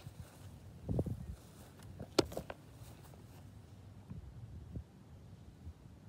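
A few soft thumps and one sharp click about two seconds in, over a quiet outdoor background: a person moving about and handling things close to a camera resting on grass.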